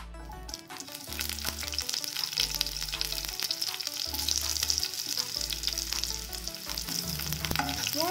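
Sliced onion and mustard seeds sizzling in hot ghee in a pan, a dense crackle of small pops and spatters. It comes in about half a second in and grows louder as the onion goes in.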